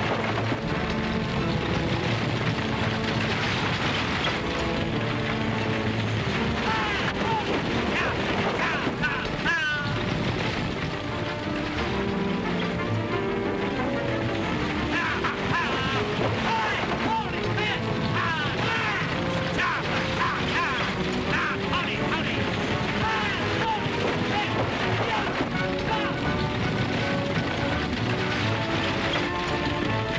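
Film chase music with swooping notes over the rumble of galloping horses and a racing stagecoach.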